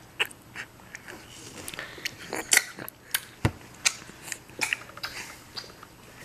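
A seven-month-old baby gumming and sucking on a piece of watermelon: irregular smacking clicks of mouth and fruit, with one sharper knock about three and a half seconds in.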